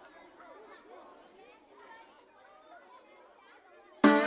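Very faint chatter of several overlapping voices, barely above silence.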